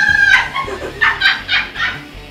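A high-pitched squeal from a young woman, followed by a quick run of short laughing bursts.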